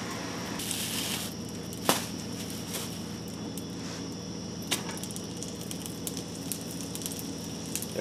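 Butter sizzling and crackling in a hot cast iron pan, a steady sizzle with fine crackles, broken by two sharp clicks about two and five seconds in.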